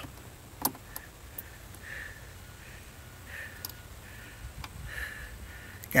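A few faint clicks of a small screwdriver prying at the side latches of a plastic wiring-harness connector plug, working one latch loose.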